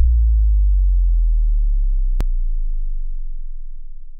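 Deep synthesized bass boom of an outro transition, its low tone slowly fading and sinking slightly in pitch. A single sharp click comes about two seconds in.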